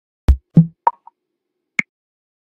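Four short, sharp electronic percussion hits spaced out over under two seconds: a deep low thump, a second thump about a quarter-second later, a higher pop with a faint echo after it, and a brighter click near the end.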